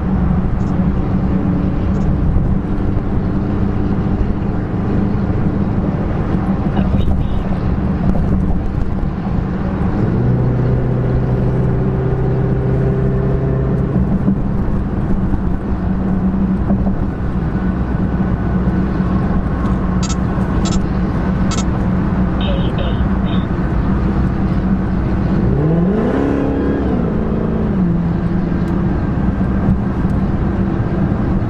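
Cabin sound of a Dodge Charger SRT Hellcat's supercharged 6.2-litre V8 cruising on the freeway, a steady drone under road noise. About ten seconds in the engine note steps up for a few seconds, and near the end the revs rise and then fall away as the driver gets on and off the throttle.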